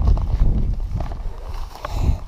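Wind buffeting an action camera's microphone: an uneven low rumble, with a couple of light knocks.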